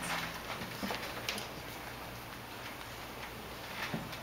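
A few light, irregular clicks and knocks over a quiet room hum, with no guitar playing yet.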